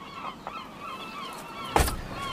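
Marsh birds calling: many short, overlapping calls that rise and fall, with a sudden loud thump near the end.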